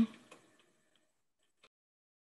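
The last of a woman's sign-off trailing away, then near silence broken by a single faint click about one and a half seconds in.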